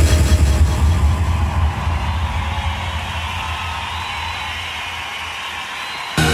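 Breakdown in a hardstyle/jumpstyle DJ set: the kick drum drops out, leaving a low rumbling bass drone with a wash of noise that slowly fades, and a faint high tone enters partway through.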